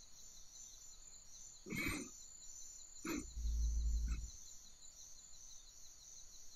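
A man's deep voice growling in character as a werewolf: a breath about two seconds in, then a low, rumbling growl of about a second a little after three seconds.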